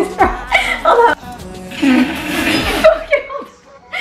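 People laughing in short bursts, with one longer breathy laugh in the middle, over background music.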